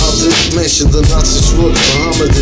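Hip hop track: a beat with heavy bass, drum hits and a repeating melodic line, with a rapping voice over it.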